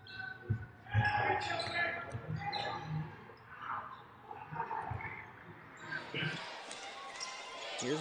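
Basketball being dribbled on a hardwood court: a handful of short thumps at uneven intervals.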